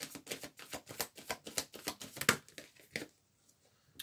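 A deck of tarot cards shuffled by hand: a rapid run of papery card clicks that stops about three seconds in.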